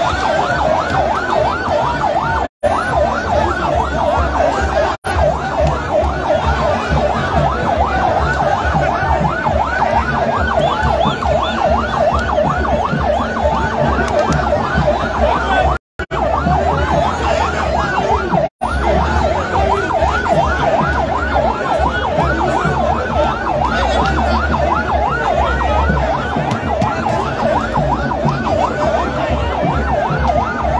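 Electronic yelp siren, a fast rising-and-falling wail repeating a few times a second without a break, over the noise of a large crowd.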